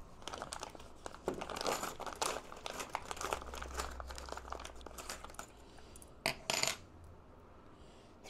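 Small metal parts clinking and rattling on a workbench: metal links of a scale tank track being handled, and steel track pins and washers picked from a loose pile. A run of light clicks gives way to two louder, short rattles near the end.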